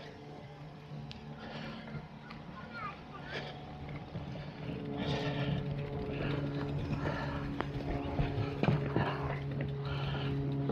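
Faint, indistinct voices with no clear words. A steady low hum comes in about halfway through.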